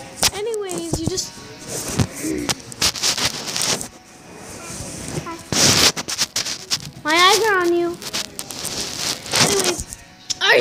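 Young children's high-pitched voices in a few short drawn-out calls, the longest one rising and falling in pitch near the end. The calls come among rustling and knocks from a phone being handled.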